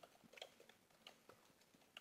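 Faint computer keyboard typing: a scattering of quiet, irregular key clicks.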